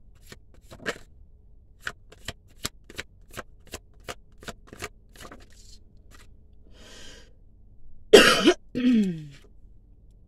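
Tarot cards shuffled by hand: a dozen or so sharp card snaps over the first five seconds. Near the end a woman coughs twice, the first cough loud.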